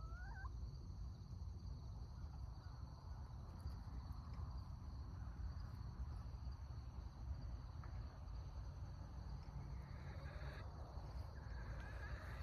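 Faint outdoor ambience: a steady high-pitched insect chorus over low, even background noise. A short rising call sounds right at the start.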